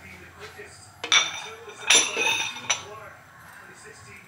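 Kitchen dishes and utensils clinking and clattering in two bursts, one about a second in and a longer one around two seconds, each leaving a short metallic ringing.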